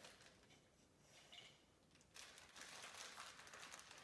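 Faint rustling and crinkling of plastic packaging being handled as a vinyl figure is unwrapped, starting about halfway through after a near-silent first half.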